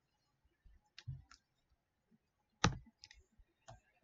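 About five faint, short clicks over near silence, the sharpest about two-thirds of the way through: the presenter's computer clicks while the slide is advanced.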